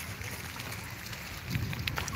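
Wind rumbling on a phone microphone over a steady hiss of outdoor background noise, with a few faint clicks near the end.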